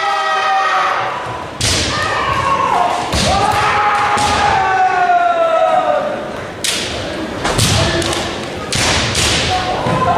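Kendo fencers' long kiai shouts, held for a second or more with the pitch sliding, broken by about five sharp thuds and knocks of stamping feet and clashing bamboo shinai.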